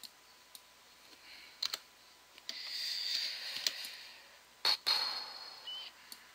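Computer mouse clicks and keyboard key presses: scattered single clicks, then a louder close pair of clicks about three quarters of the way in, with a soft hiss beneath them in the middle stretch.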